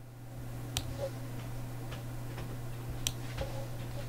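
Faint room noise with a steady low hum and a few scattered light clicks, the sharpest about a second in and about three seconds in.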